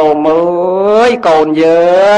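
A Buddhist monk's voice intoning in a chant-like, drawn-out delivery, holding two long syllables of about a second each.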